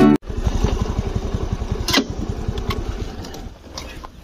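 Motor scooter engine running with a steady low putter of evenly spaced firing pulses, growing quieter and fading out near the end, with a sharp click about two seconds in.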